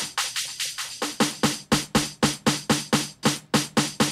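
A programmed drum loop from Native Instruments' Rudiments kit playing, with hits about four a second. For about the first second the low end is filtered out by an EQ high-pass, then it comes back as the filter is swept down.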